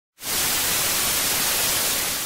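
Television static: a steady hiss of white noise, like an untuned analogue TV, starting a moment in.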